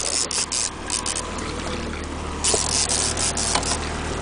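Fishing boat's engine running at low speed with a steady low hum, overlaid by bursts of rasping, rushing noise, the longest lasting about a second from two and a half seconds in.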